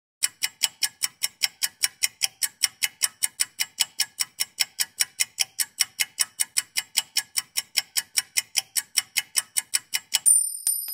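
Countdown timer sound effect: steady clock-style ticking at about four ticks a second, running while the time to answer counts down.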